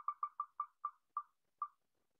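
Wheel of Names spinner's tick sound: short, clicky ticks that slow steadily from a rapid run to one every half second or so as the on-screen wheel winds down toward choosing a name.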